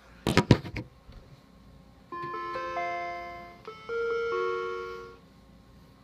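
A few sharp knocks about half a second in. Then an Apple Macintosh Quadra 650 plays its "death chime": two phrases of sustained electronic notes entering one after another, lasting about three seconds. This is the startup failure signal, which the owner thinks a missing ADB keyboard could explain.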